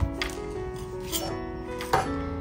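Background music with held notes, over a few light taps and clicks from a small cardboard product box being handled, the sharpest right at the start and near the end.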